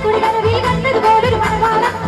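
A woman singing a song into a microphone, backed by a live stage band: keyboard and drums keeping a steady beat under her melody.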